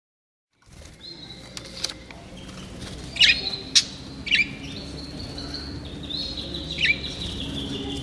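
Small aviary birds, canaries and budgerigars, chirping and calling together from about half a second in, with held trilling notes and several loud, sharp calls in the middle of the stretch.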